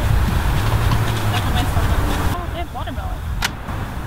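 Steady low rumble of passing road traffic with faint voices behind it, dropping to a quieter level a little past halfway; a single sharp click about three and a half seconds in.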